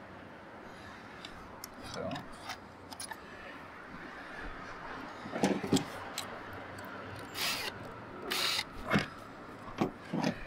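Small metal tools and parts handled with light clicks and knocks, then a small drill bit fitted into a Ryobi 18V cordless drill's chuck. Two short rattling bursts come about a second apart near the end.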